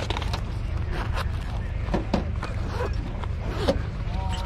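Outdoor open-air hubbub: faint voices of people nearby, with a few short rustling and handling noises over a steady low rumble of wind on the microphone.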